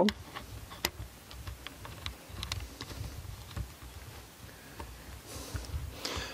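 Faint scattered clicks and low handling rumble as a metal Manfrotto quick-release plate is fitted against a camera's holster mounting plate, with a few sharper ticks in the first half.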